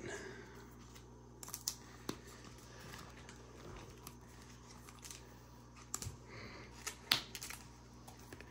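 Soft, scattered clicks and taps of baseball trading cards being handled and flipped through, the sharpest two near the end.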